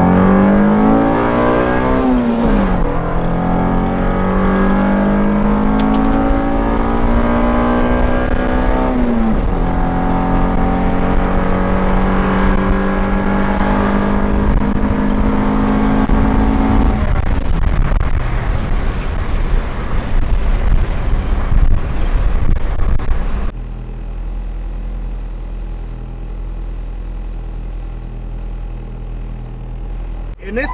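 Honda Civic EG's swapped-in GSR (B18C) 1.8-litre DOHC VTEC four-cylinder, heard from inside the cabin on a full-throttle pull. The engine climbs in pitch, drops at a gear change about three seconds in, climbs again, shifts again about nine seconds in, then climbs more slowly in the next gear until the throttle is lifted about seventeen seconds in. It is a wide-open-throttle test of a fresh ECU tune, checking the air-fuel mixture. About 23 seconds in the level drops abruptly to a quieter, steady engine sound.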